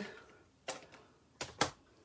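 Three short, sharp plastic clicks as craft supplies are handled and set down on the table: a single click, then two in quick succession, as a stamp pad is put away and a plastic Stampin' Scrub case is brought in.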